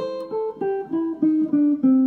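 Electric guitar playing a single-note blues lick in A, about eight picked notes in two seconds that step down in pitch, working the major third in beside the flat third.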